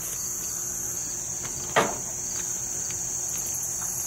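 Steady high-pitched insect chorus, with a single thump a little under two seconds in as a large watermelon is set down onto a digital scale.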